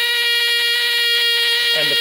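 ZOIC PalaeoTech Trilobite pneumatic air scribe running unloaded at 90 psi line pressure, its stylus held in the air: a steady high-pitched buzz with a hiss of air.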